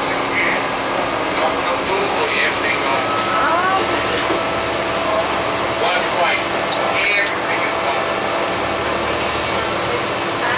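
Inside a 2005 Gillig Phantom transit bus under way: a steady hum from its Cummins ISL diesel and drivetrain, with a faint constant whine, under indistinct voices of people talking.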